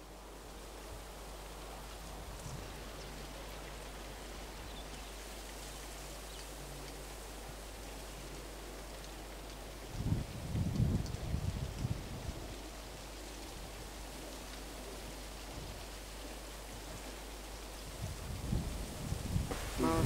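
Outdoor ambience: a steady, even hiss, with low rumbles of wind on the microphone about ten seconds in and again near the end.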